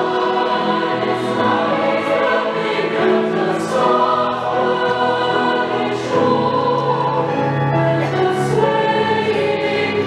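Large mixed choir of men and women singing sustained, chord-filled lines with piano accompaniment; the voices' 's' consonants hiss out together several times.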